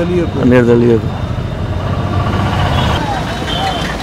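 Steady low rumble of a motor vehicle's engine running close by, with short snatches of men's voices over it.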